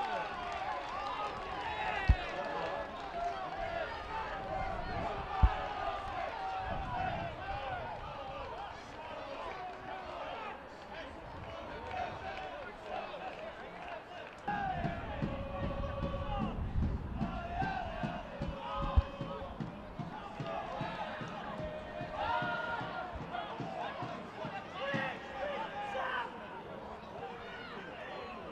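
Live pitchside sound of a football match: players' and spectators' shouts and voices throughout, with three sharp thumps of the ball being struck, about two, five and nineteen seconds in.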